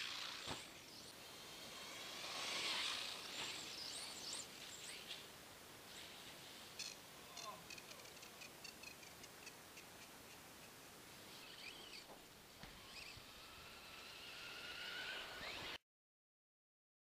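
A radio-controlled buggy lands a jump on packed snow with a knock about half a second in, then its motor whines up and down as it drives about. Near the end the whine rises again as it speeds up, then the sound cuts off suddenly.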